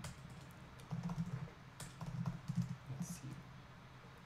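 Typing on a computer keyboard: an irregular run of key taps as a terminal command is entered.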